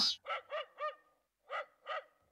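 Dog barking: three quick barks, a short pause, then two more.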